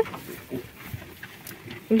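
Goats chewing and pulling at freshly cut grass at a wooden feeder: faint, scattered munching and rustling, with a woman's voice starting just at the end.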